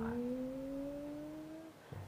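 A person's long drawn-out hesitation hum between phrases: one held note that slowly rises in pitch and then stops shortly before the end.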